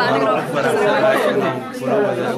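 People talking: a close voice over background chatter of other voices.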